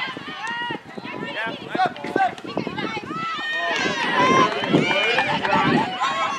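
Several voices shouting and calling across an outdoor soccer field, overlapping, growing louder and busier after about three and a half seconds.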